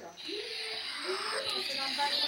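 Faint voices talking in a room, over a steady hiss that starts a moment in.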